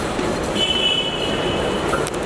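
A high, steady tone of a few pitches held together, starting about half a second in and lasting just over a second, over the busy hubbub of a crowded public space.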